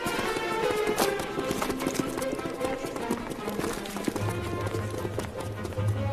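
Soundtrack music of an animated film, with dense, rapid clicking and clattering running through it; a deep bass note comes in about four seconds in.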